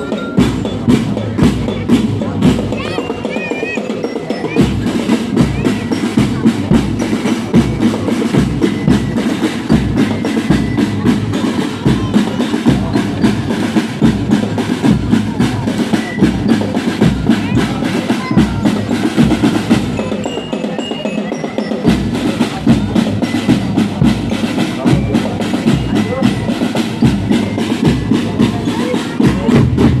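Marching drum band of bass drums and snare drums beating a fast, steady rhythm.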